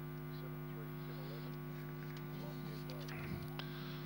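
Steady electrical mains hum on the broadcast sound line, with faint indistinct background voices.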